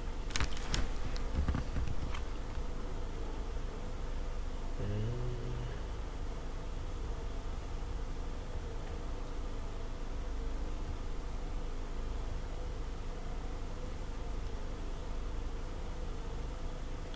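Steady low background hum, with a few sharp clicks in the first two seconds.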